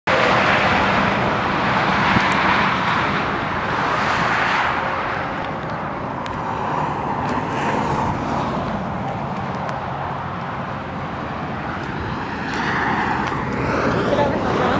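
Road traffic on a highway, a steady rumble of tyres and engines that swells a few times as vehicles go by.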